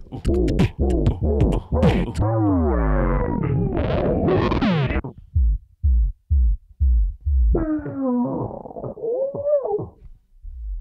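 Live-looped beatbox music built from the voice on a Roland RC-505 mkII loop station: effected vocal tones glide up and down over beatboxed clicks and kicks, thinning about halfway to a repeating low kick before pitched vocal tones come back near the end.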